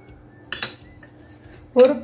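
A short clatter of kitchen bowls about half a second in, with a brief ring, while ingredients are tipped into a glass mixing bowl. A voice speaks a word near the end.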